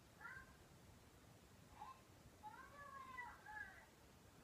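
A small child's faint, high-pitched voice coming through a baby monitor's small speaker, in a few short gliding phrases, the longest near the end.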